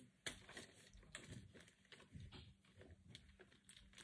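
Near silence: a few faint, scattered clicks and soft rustles of small items being handled.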